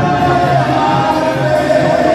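Live ranchera song: a male singer holding long notes with a slight waver over band accompaniment, amplified through the arena's sound system.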